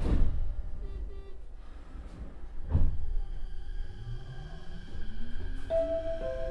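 Inside a Meitetsu 4000 series electric train under way: steady wheel-on-rail rumble with a knock at the start and another about halfway through, then the traction motors' inverter whine climbing steadily in pitch as the train accelerates, with higher steady tones joining near the end.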